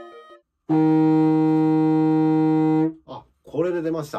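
Contrabassoon sounding one steady, sustained low E-flat (Es) in its tenor register for about two seconds, cleanly and without a crack: a newly found alternative fingering making this hard-to-sound note speak. A short spoken exclamation follows near the end.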